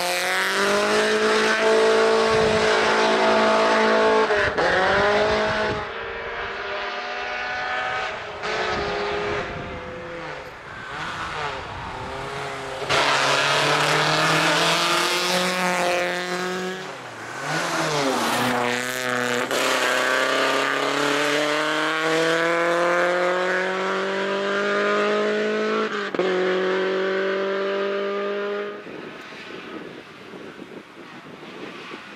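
Hill-climb race car engines revving hard, climbing in pitch through each gear with sharp drops at the gear changes, several times over. The loudness swells and fades as cars pass. A Suzuki Swift race car accelerates past near the start.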